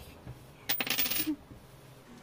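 A brief clinking, jingling clatter of small hard objects, lasting about half a second near the middle.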